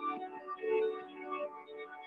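Slow, soft instrumental music with long held notes: the lead-in of a gentle worship song played for a quiet rest.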